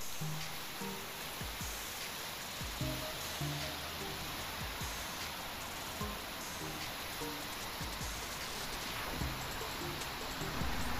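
Steady rushing of a river running high and fast in flood, with background music playing over it.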